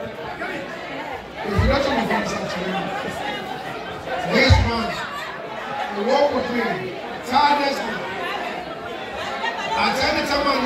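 Indistinct talk and chatter of several people, echoing in a large hall.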